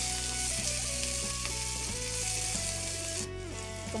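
Sliced white bird's-eye chillies, shallots and garlic sizzling in hot oil in a nonstick frying pan, stirred with a wooden spatula as the chillies fry until wilted. The sizzle cuts off abruptly a little over three seconds in.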